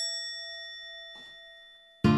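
A single bell-like chime struck once, ringing with a few clear tones and fading away slowly.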